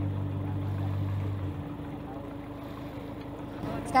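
A boat's engine running steadily, a low even hum over a wash of water noise. Its deepest tones drop away about one and a half seconds in, leaving a fainter, higher hum.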